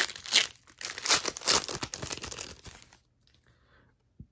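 Foil trading-card pack wrapper of a 2017-18 Upper Deck Series 1 hockey pack being torn open and crinkled by hand. The crackling stops about three seconds in.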